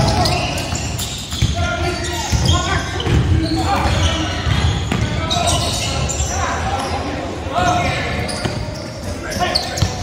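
A basketball being dribbled and bounced on a hardwood gym floor during a pickup game, in short repeated strikes, with players' voices echoing in the large gym.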